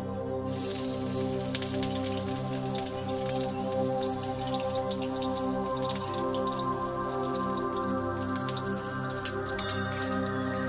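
Hot oil crackling and spitting in a wok as food fries, the crackle starting about half a second in and going on as dense irregular pops. Background music with sustained tones plays underneath.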